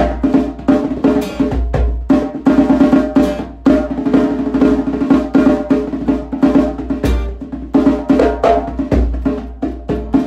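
Djembe and acoustic guitar playing together. Quick hand strikes on the djembe run over sustained guitar chords, with deep bass strokes from the drum about seven and nine seconds in.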